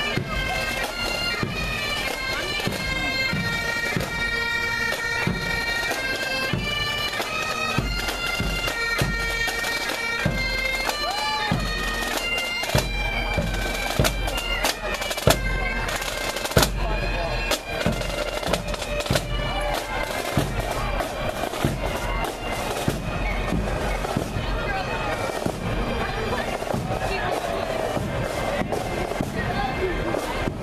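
Marching pipe band playing: bagpipes carry a tune of held notes over snare and bass drums. About halfway through the pipe tune fades and the drums carry on.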